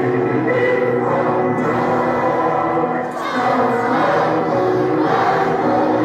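A children's choir singing a song together in long, held notes.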